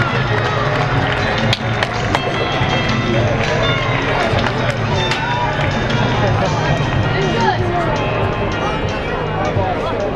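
Hockey-arena ambience: a mix of crowd chatter and voices over music playing in the arena, with scattered sharp clacks of hockey sticks and pucks on the ice.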